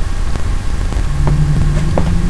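Steady low hum with background hiss, a second low steady tone coming in about halfway, and a couple of faint clicks.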